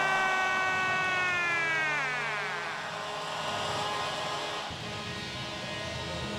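Arena goal horn sounding to signal a goal, a steady chord of tones that sags in pitch and dies away about two to three seconds in, over crowd noise.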